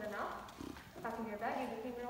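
An actor's voice speaking stage dialogue, with long held vowels in two phrases.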